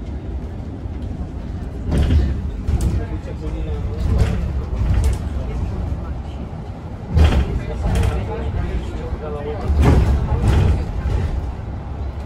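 Shuttle bus driving, heard from inside: a steady low rumble of engine and road, broken by about seven sharp knocks and rattles from the bodywork as it rides along.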